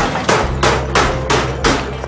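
Hand tools striking a small building's ceiling during demolition, a quick run of sharp blows about three a second.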